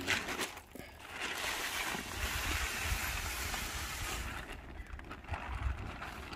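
Plastic tarp rustling and crinkling as it is handled and spread out flat on the ground, a steady rustle from about a second in that thins near the end.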